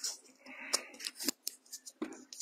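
Handling noise from a clip-on microphone being rubbed and knocked against a shirt collar: uneven rustles and scrapes with a few sharp clicks.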